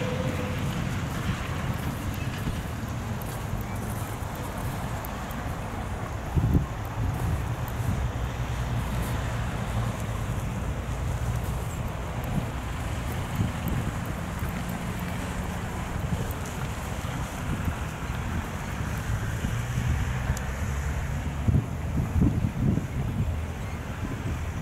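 Low rumbling wind noise on the microphone, with a few brief thumps.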